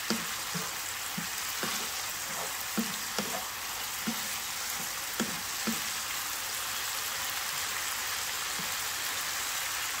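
Melinjo skins and tofu sizzling steadily in oil in a frying pan, while a wooden spatula knocks and scrapes against the pan as it stirs. The stirring strokes come about once a second at first, then thin out after about six seconds while the sizzling goes on.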